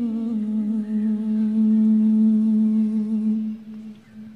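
A woman's voice in Quranic tilawah recitation holding one long, steady note at the end of a melodic phrase. It fades out about three and a half seconds in.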